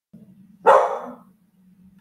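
A pet dog barking once, loudly, about two-thirds of a second in.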